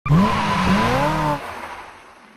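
Sound effect of a sports car drifting: engine revs rising and falling over a steady tyre squeal. It cuts off about a second and a half in and then fades away.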